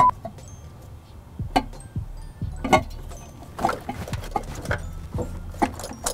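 A steady test tone cuts off right at the start. It is followed by scattered sharp clicks and knocks, about one or two a second, from metal engine parts and tools being handled while an aluminium intake manifold is fitted onto its studs.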